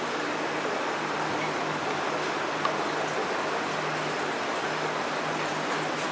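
Steady rushing noise of water circulating through reef aquarium equipment, with a faint low hum that comes and goes.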